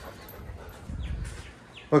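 Quiet sounds from a Rottweiler close to the microphone.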